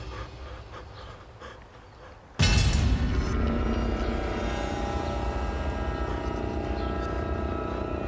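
Tense film score. It is quiet and fading at first, then a sudden loud low hit comes about two and a half seconds in and leads into a sustained, dark music bed.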